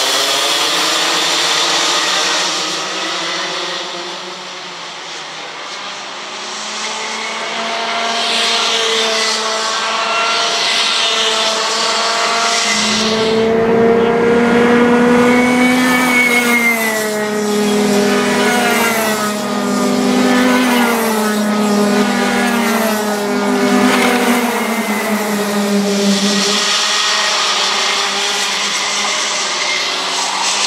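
Rotax Max Junior racing karts, with 125 cc single-cylinder two-stroke engines, buzzing around the circuit together. About a third of the way in, one kart's engine comes close and grows loud, its pitch climbing and dipping again and again with the throttle through the corners, before fading near the end.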